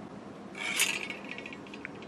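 A short rustling scrape, starting about half a second in, as a wiring harness is lifted out of its paper and plastic wrapping, followed by a few faint ticks of handling.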